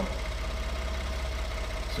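Ford F-150's 3.5-litre EcoBoost V6 idling steadily, a low even pulsing with no change in speed.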